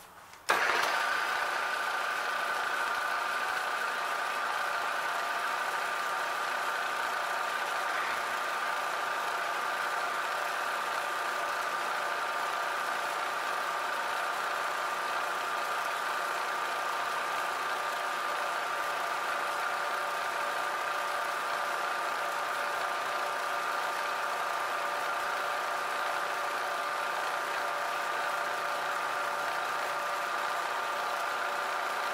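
Milling machine spindle starting abruptly about half a second in, then running steadily with a high whine while the end mill pecks down through a brass cannon barrel.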